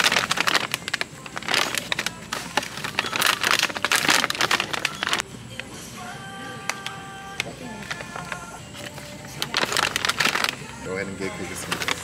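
Plastic packaging of dog-treat bags crinkling as they are handled, over about the first five seconds, then fading under steady background music.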